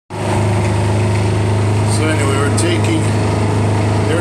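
Loud, steady low machine hum with an even drone of overtones.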